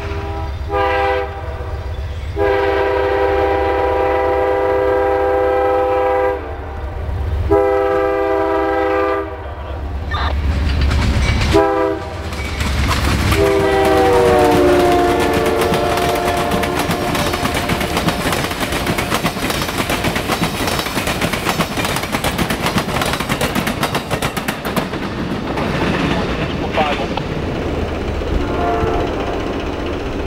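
Amtrak GE P42 diesel locomotive's horn sounding in four blasts, the third the longest at about four seconds. About 13 seconds in, a last horn note drops in pitch as the locomotive passes. The passenger cars then go by with continuous wheel-and-rail clatter.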